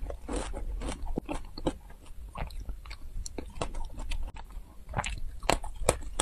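Close-miked chewing and biting of a crisp chocolate-coated snack: irregular sharp crunches of the brittle shell, coming thicker near the end.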